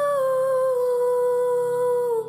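A female voice holds one long sung note over soft accompaniment. The note steps down slightly in pitch within the first second, then stays level.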